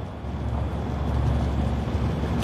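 A steady low rumble with a faint hiss and no speech: ambient room noise under the footage of people leaving the courtroom.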